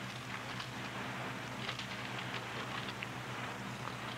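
Faint, irregular crackling and rustling of Bible pages being leafed through while a passage is looked up, over a steady low electrical hum in the recording.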